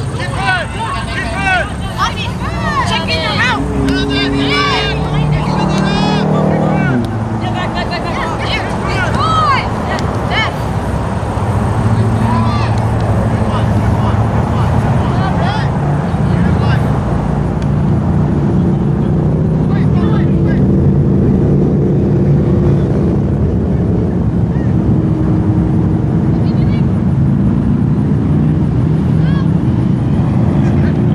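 Distant shouts and calls from players across a soccer field during roughly the first ten seconds, over a steady low motor drone that grows stronger through the second half.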